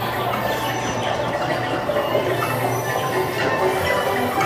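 Dark-ride vehicle running along its track with a steady low hum, which drops away just before the end, mixed with the ride's background music.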